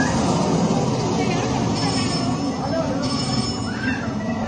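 Steady amusement-arcade din: overlapping voices and machine noise, with short high electronic tones sounding on and off.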